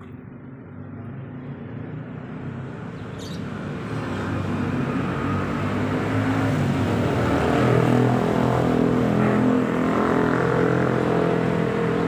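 A motor vehicle's engine running with a steady hum, growing louder over the first eight seconds or so and then holding steady.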